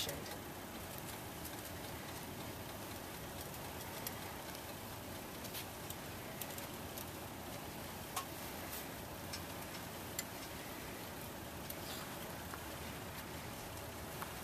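Scissor jack being cranked by its handle to lift the car: a few faint, irregular clicks over a steady low hiss.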